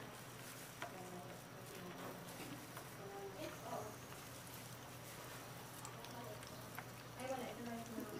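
Faint sizzling of fish nuggets frying in shallow cooking oil in a pan, over a steady low hum.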